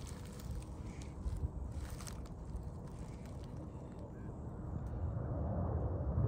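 Faint outdoor ambience: a low, uneven rumble of wind on the microphone with a few soft ticks, growing a little louder near the end.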